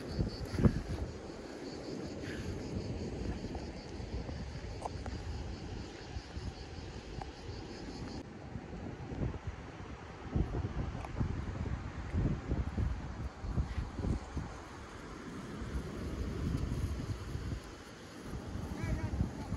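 Wind buffeting the microphone in gusts, a low rumble that swells and fades, with a single thump less than a second in.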